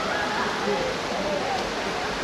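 Echoing indoor swimming pool hall: a steady wash of water noise from swimmers splashing in the lanes, with distant spectators' voices and calls mixed in.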